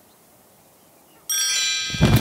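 A cartoon sparkle sound effect. After about a second of near silence, a shimmering chime of many high ringing tones starts suddenly and holds steady. A low thud comes right at the end.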